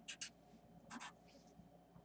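Faint strokes of a felt-tip marker on paper as a line is drawn: two short scratchy strokes at the start and another about a second in.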